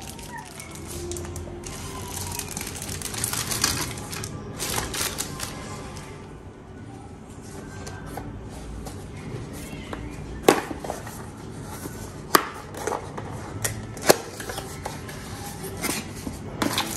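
Small cardboard boxes being handled and opened on a stone counter: rustling of card and packaging, then several sharp taps and clicks in the second half, over soft background music.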